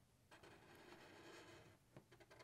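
Near silence, with a faint scratch of a felt-tip marker drawing on paper that starts just after the beginning and stops near the end.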